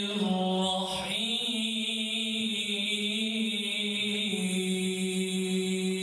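A man's voice reciting the Qur'an in melodic chant (tajwid), drawing out long, steady held notes, with a short break about a second in.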